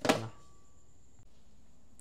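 A single short knock right at the start, then quiet room tone.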